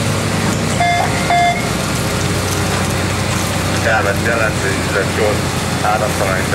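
An engine running steadily with a low drone, with two short electronic beeps about a second in.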